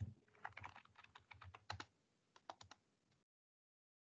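Faint typing on a computer keyboard: a quick, irregular run of keystrokes that stops about three seconds in.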